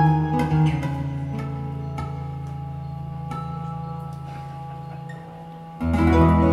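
Live acoustic guitar music: sparse plucked guitar notes over a sustained low drone that dies away about five seconds in. Just before the end the ensemble comes back in loudly.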